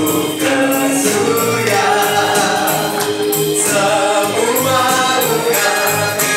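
A youth choir of mixed voices singing a hymn in Indonesian, with instrumental accompaniment keeping a steady beat.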